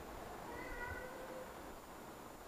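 A faint pitched call, held for about a second in the middle, over quiet room tone.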